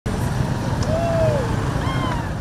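Busy street ambience: a steady traffic rumble, with a voice calling out briefly, rising and falling in pitch, about halfway through and again near the end.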